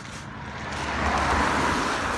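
A car driving past on a wet road, its tyre hiss swelling to a peak about a second and a half in, then easing.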